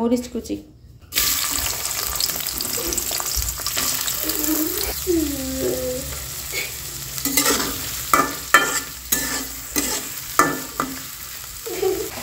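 Sliced onions and green chillies hitting hot oil in an aluminium karai: a sudden sizzle about a second in that settles into steady frying. In the second half a spatula scrapes and knocks against the pan as they are stirred.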